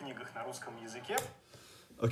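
A man's voice speaking a short Russian phrase, which stops a little past a second in with a single sharp click, followed by quiet room tone.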